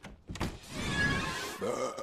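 A brief rush of noise in the cartoon's soundtrack that swells to a peak about a second in and fades, over a scene cut; a voice starts near the end.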